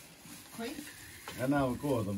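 Faint scraping of a large kitchen knife cutting through a frosted cake and against its foil cake board, followed by a voice speaking near the end.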